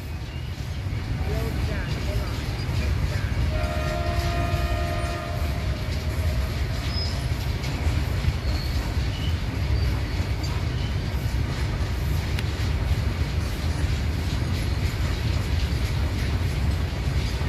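A goods train of loaded coal wagons rolling past with a steady low rumble of wheels on rails. A train horn sounds briefly, about four seconds in, for about two seconds.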